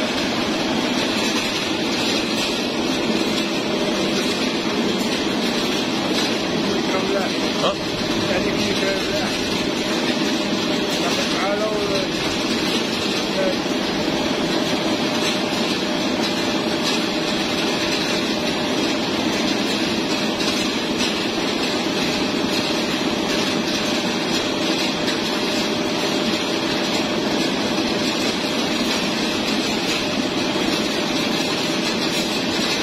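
Poultry slaughter line machinery running: a steady mechanical noise with a low, even hum from the motors and overhead shackle conveyor carrying plucked chickens.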